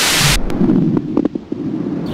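A video transition sound effect: a sudden loud hissing burst lasting under half a second, followed by a low rumbling noise with a few short knocks.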